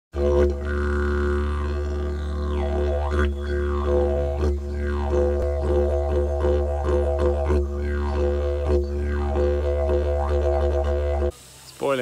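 Music led by a didgeridoo: a steady low drone with sweeping, shifting overtones. It cuts off suddenly shortly before the end.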